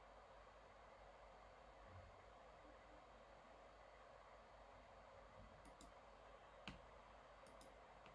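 Near silence with faint room hiss, broken in the second half by a few faint, sharp computer mouse clicks.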